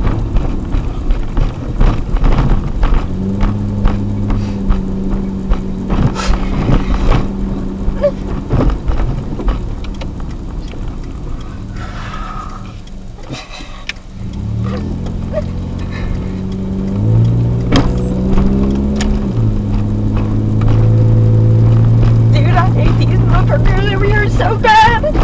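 Car engine and road noise heard from inside the cabin while driving, with scattered knocks and rattles. The engine note drops away around twelve seconds in, picks up again about two seconds later, and runs louder near the end.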